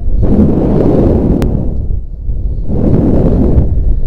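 Wind buffeting the camera microphone in two strong gusts, heard as a loud low rumble, with a single sharp click about one and a half seconds in.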